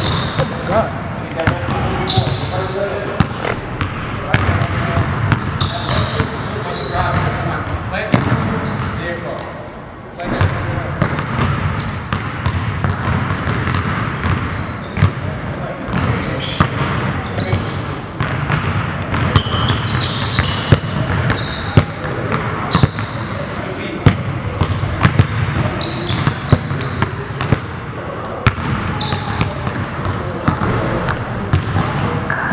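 Basketballs dribbled hard on a hardwood gym floor, many sharp bounces in quick succession, mixed with short high sneaker squeaks as players cut and change direction.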